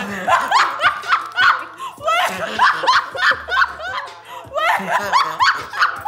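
Women laughing hard in a small room, in rapid repeated bursts of breathy, high-pitched laughter.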